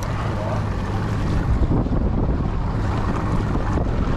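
Mercury outboard motor running steadily at trolling speed, with wind buffeting the microphone and water washing in the wake.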